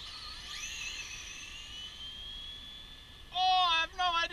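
Two electric RC drag cars launching and accelerating away, their motors making a high whine that climbs in pitch, then levels off and fades with distance. Near the end a person lets out a loud shout.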